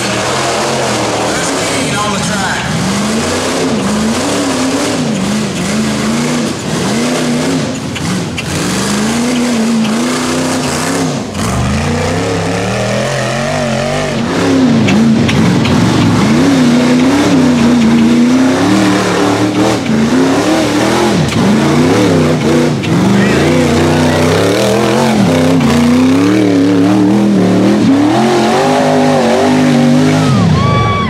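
Rock bouncer buggy's LS V8 engine revving hard again and again, the pitch rising and falling as the throttle is worked on a steep rocky climb; it gets louder about halfway through.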